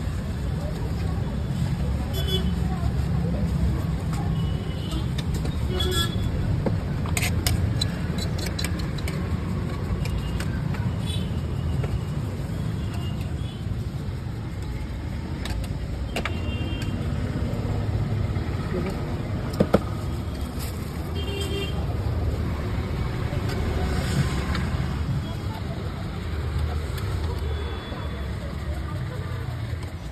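Busy roadside street noise: a steady low traffic rumble with occasional short vehicle horn toots and voices in the background. Scattered clicks and clatter from the food stall, with one sharp knock about twenty seconds in.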